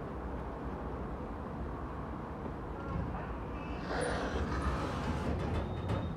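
Pickerings lift arriving and its two-speed sliding doors opening, heard as a swell of rushing noise about four seconds in over a low steady hum. A few short clicks follow near the end.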